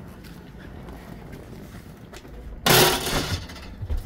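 A short, loud clatter about two and a half seconds in as a foot steps onto framed solar panels lying on the van floor, over a low steady rumble.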